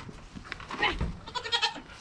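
Nigerian Dwarf goats bleating: two short calls, one a little under a second in and another in the second half, with a dull thump about a second in.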